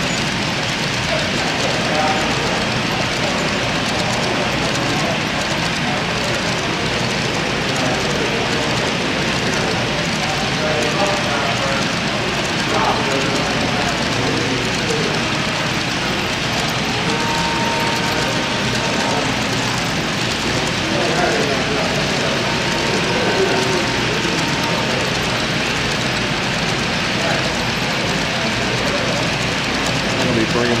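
A model freight train of coal hopper cars rolling steadily past on its track, under the steady murmur of a crowd talking in a large exhibition hall.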